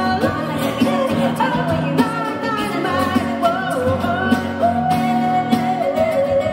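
Live pop song: voices singing a melody over electric keyboard and strummed acoustic guitar with a steady beat, ending on a long held note near the end.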